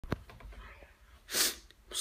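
A short, sharp burst of breath from a person close to the microphone, a little over halfway through, after a click near the start from the handheld phone being handled.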